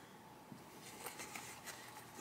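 Faint rustle and soft taps of stiff fabric bag panels being shifted by hand on a cutting mat, with a few small handling sounds over quiet room tone.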